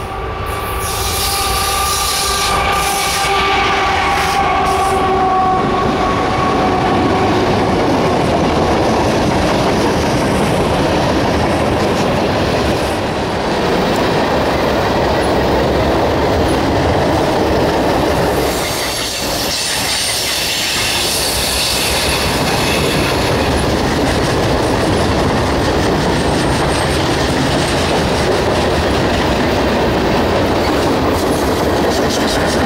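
Union Pacific diesel freight train passing close by on a curve. The locomotives go by with a steady pitched drone in the first few seconds. Then come the continuous rumble and clatter of freight cars (tank cars, boxcars and covered hoppers) rolling past.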